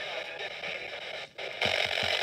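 FM static hissing from a Midland weather radio's speaker as it is tuned down the dial through empty frequencies. The hiss cuts out briefly about a second in and comes back louder near the end.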